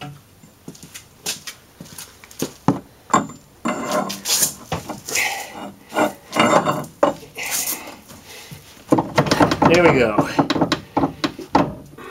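A steel pipe worked as a lever against a car's front suspension: scattered metal-on-metal clanks, knocks and scrapes as the lower ball joint is pried loose from the steering knuckle. A man's voice comes in near the end.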